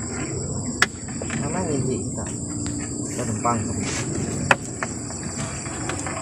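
A steady high-pitched insect chorus, with two sharp clicks, one about a second in and one near the end.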